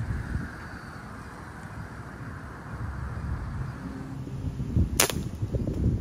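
A single sharp air rifle shot about five seconds in.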